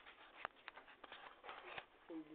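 Faint scattered clicks and brief rustles over a quiet room, the sharpest click about half a second in and a short flurry in the second half.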